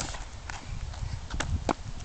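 Small child's shoes tapping and scuffing on a concrete driveway: a few sharp taps, two of them close together past the middle, over a low rumble.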